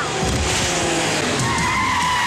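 Vehicle tyres skidding, with a squeal held for about a second in the second half.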